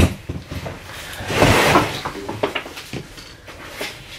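Handling noises as objects are moved about at a desk: a sharp knock at the start, scattered light knocks and clicks, and a rustling swell in the middle.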